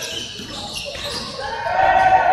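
Live court sound in an echoing sports hall: a basketball bouncing and players' voices, with a held shout near the end.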